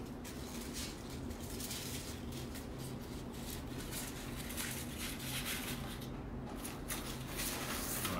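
Faint rustling and light clicks of hands handling and inserting equisetum (horsetail) stems in a floral arrangement, over a steady low hum.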